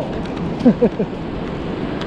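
Wind buffeting the camera microphone on an open beach, with a short burst of laughter a little over half a second in.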